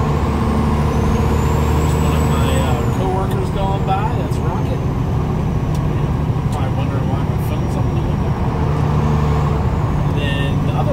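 Semi truck's diesel engine running steadily under way, heard inside the cab with road noise. A thin high whine rises about a second in and then slowly falls away.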